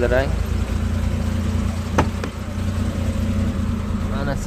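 A car engine idling steadily, with one sharp click about two seconds in and a fainter one just after.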